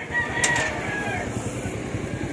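A rooster crowing once, a call of about a second, with a single knock about half a second in.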